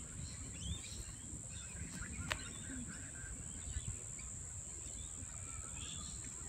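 Outdoor ambience: a steady high-pitched insect buzz with faint, scattered bird chirps, and one sharp click a little over two seconds in.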